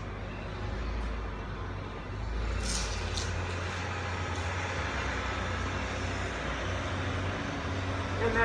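A steady low mechanical rumble, like a vehicle engine running nearby, fills the background. About three seconds in there is a brief scrape of chalk on concrete.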